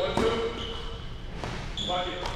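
A basketball drill on a hardwood gym court: a faint knock of the ball caught off a pass early on, then quiet movement with a few short, high squeaks, typical of sneakers on the floor as the shooter rises for a jump shot.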